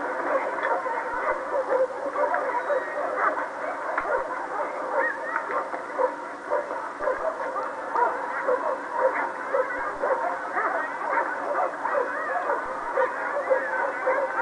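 Police dogs barking again and again over a continuous din, on a thin, tinny old recording.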